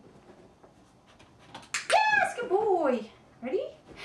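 A few sharp clicks, then about two seconds in a loud, high-pitched, sing-song human voice that slides up and down, with a shorter call after it.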